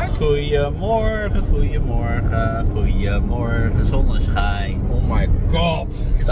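Steady road and engine noise inside a moving car's cabin, under people talking.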